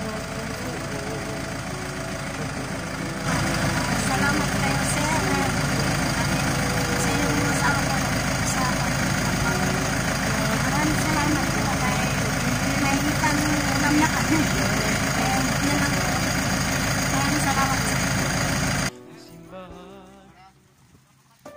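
Steady engine idling under background voices and faint music. It cuts off suddenly near the end.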